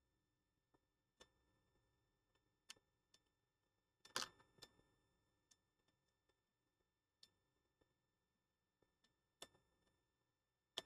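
Near silence broken by a few faint, sharp clicks and taps from hands handling an opened iPhone 7 on a silicone repair mat. The loudest comes about four seconds in.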